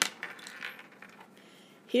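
A pencil set down on a desk with a short click, followed by faint scratchy handling noise as a highlighter is picked up.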